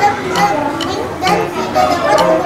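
A young girl's voice reading aloud, with background music laid under it.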